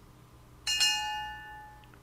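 A bright bell-like notification chime sound effect, struck about two-thirds of a second in and ringing out over about a second.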